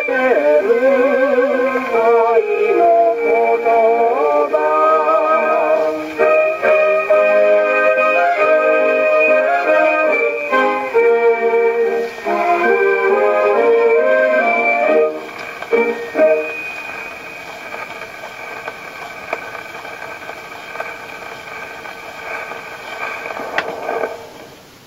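A Columbia No.201 portable acoustic gramophone playing a 78 rpm shellac record: the closing bars of a vocal song with orchestra, the singing full of vibrato in the first few seconds. The music ends about two-thirds of the way through, leaving the needle's surface hiss from the record, and there is a sharp click near the end.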